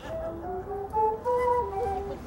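Two Bolivian wooden flutes playing a ritual melody together, short held notes stepping up and down.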